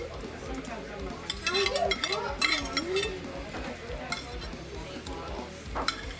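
Metal forks and spoons scraping and clinking against ceramic plates as food is scooped up, with a few sharp clinks, over low voices in the room.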